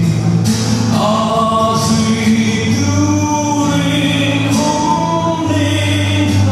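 A man singing a slow song into a microphone, accompanying himself on an acoustic guitar, with long held notes.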